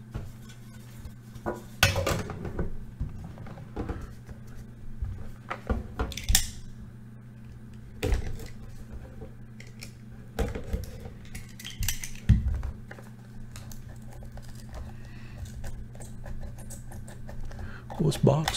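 Handling sounds from opening a sealed trading-card case: scattered clicks, taps and knocks a few seconds apart as the card case is handled and its seal is slit with a cutting tool, with a brief scrape about six seconds in, over a steady low hum.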